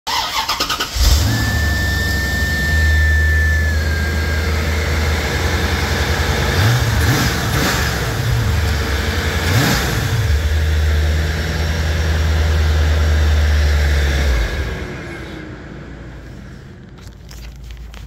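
1993 Corvette's V8 cranking for about a second, catching and idling, with a high steady squeal for the first few seconds after it starts. It is blipped briefly a couple of times and is shut off about 14 seconds in; a fading hum winds down after it stops.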